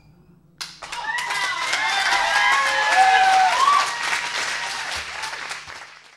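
Audience applauding, with cheering and whoops. It starts suddenly about half a second in, swells, and fades out near the end.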